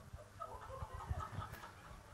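Faint murmur of indistinct voices over a low room rumble in a large hall, in a lull between a question and an answer.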